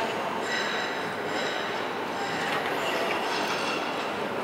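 Steady background noise of a large indoor sports hall, with faint high whines or squeaks coming and going.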